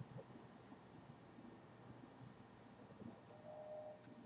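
Near silence: room tone, with a faint steady tone near the end.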